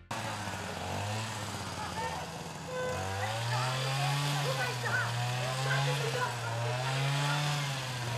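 A small engine running steadily over street noise, its pitch rising about three seconds in and then wavering slowly up and down.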